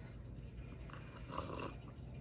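A person sipping tea from a ceramic mug: one short, faint sip about a second and a half in.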